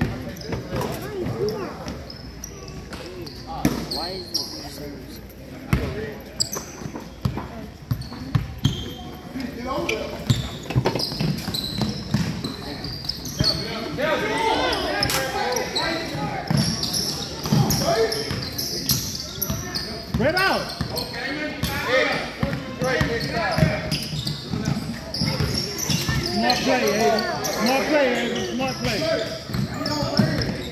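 A basketball bouncing on a hardwood gym floor during play, with the hall's echo. Voices of players and spectators call out over it, busier from about a third of the way in.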